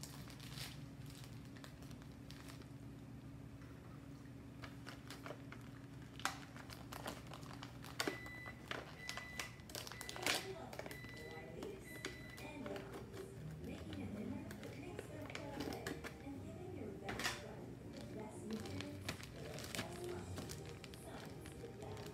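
A steady low electrical hum from a kitchen appliance, then a run of short high electronic beeps about eight to twelve seconds in, with scattered clicks and knocks. Faint voices run through the second half.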